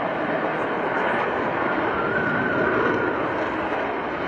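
Jet noise from an F-22 Raptor's twin Pratt & Whitney F119 turbofans as it flies past, a steady rushing rumble with a faint whine in the middle.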